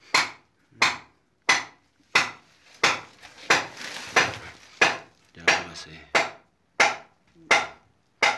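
A miner's hand hammer striking in a steady rhythm, about one and a half blows a second, a dozen sharp blows in all, each fading quickly.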